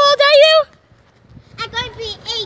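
A child's high-pitched, drawn-out yell that breaks off about half a second in, followed after a short pause by brief high vocal calls near the end.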